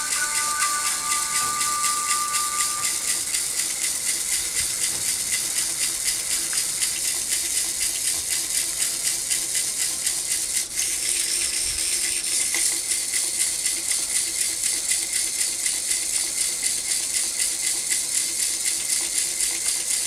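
Battery-powered toy caterpillar crawling, its motor and plastic segments making a fast, even rattle.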